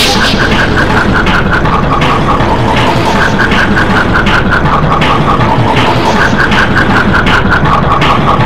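Loud, distorted mash-up of layered cartoon soundtrack audio: a short run of quick, high notes stepping downward repeats about every two and a half seconds over a dense, rumbling noise.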